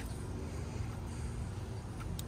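Steady low outdoor background rumble with no distinct event.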